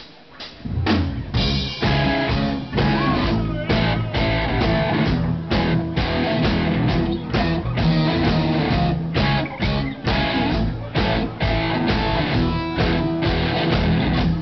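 A live rock band of electric guitars and drum kit starts playing about a second in: an instrumental song intro with a steady drum beat.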